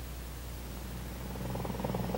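Steady low hum and hiss of an old film soundtrack. About one and a half seconds in, the fast, even chop of a Sikorsky CH-54 flying crane's rotors fades in and grows louder.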